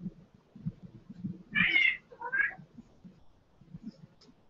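Domestic cat meowing twice, a longer meow about a second and a half in, followed at once by a shorter one.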